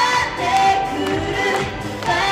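Female vocal group singing a J-pop song live into microphones over amplified backing music.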